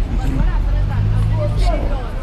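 Voices talking over street traffic. A vehicle engine drones steadily in the middle for about a second.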